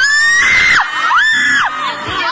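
Fans screaming in excitement at close range: two long, high-pitched screams, the first rising and breaking off a little under a second in, the second held level until near the end, over crowd chatter.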